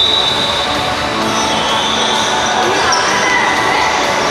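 Sound of an indoor football match in a sports hall: the ball being kicked and bouncing on the hard floor, shoes squeaking, and voices of players and spectators, all echoing in the large hall.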